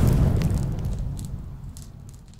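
A cinematic boom sound effect with a deep rumble and light crackle. It is loudest at the start and fades away over about two seconds.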